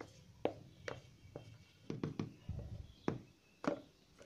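Light knocks and taps, about eight spread through the few seconds, as a container is tapped and scraped against a paper cup while wet white-cement paste is emptied into it.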